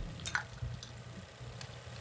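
Brewed coffee being poured into a glass over ice: a faint trickle of liquid with a few light clicks.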